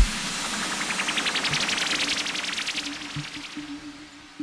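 Dubstep breakdown: the bass drops out and a white-noise riser with rapid pulses climbs steadily in pitch over about three seconds. It fades out near the end over a faint held low note.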